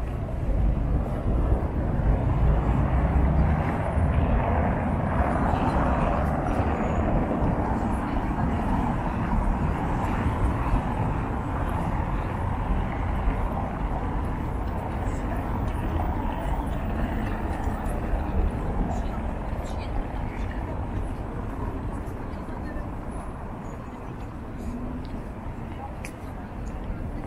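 City square ambience: steady traffic noise with people talking nearby, louder in the first half and easing off toward the end.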